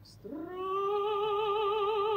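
Operatic voice singing: after a brief breath, it slides up into a note about a quarter second in and holds it with a wide, even vibrato.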